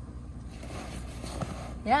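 Zipper on a fabric carry case being pulled open.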